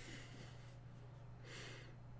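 Quiet room tone with a steady low electrical hum, and one short breath out from a person, like a quiet laugh through the nose, about one and a half seconds in.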